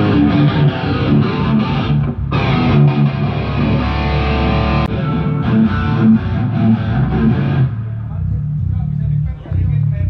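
Distorted electric guitar played loud through a stage amp at a soundcheck: riffs and chords with a short break about two seconds in. It stops near the end, leaving low bass notes and faint voices.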